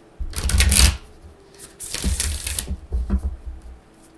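A deck of affirmation cards shuffled by hand, the two halves of the deck fluttering together: two long bursts of rapid card flutter about a second apart, then a shorter one just after three seconds.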